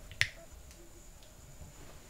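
A single sharp click about a quarter second in, over quiet room tone with a faint steady high-pitched tone.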